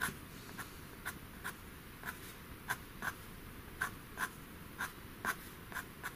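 A pastel pencil scratching on textured pastel paper in about a dozen short, quick strokes, roughly two a second, as fine fur hairs are flicked in.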